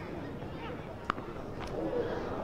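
A single sharp crack of a cricket bat striking the ball about a second in, a big swinging shot hit for six, over low background ambience from the ground.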